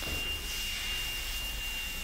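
A smoke alarm sounding one continuous high-pitched tone, over a constant rushing noise.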